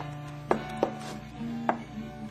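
Solo guitar playing a few slow plucked notes that ring on, each struck sharply: one about half a second in, another soon after, and one more near the end.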